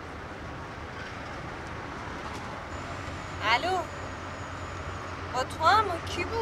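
Steady road and engine noise inside a moving car's cabin. A woman's voice breaks in briefly about halfway through and again near the end.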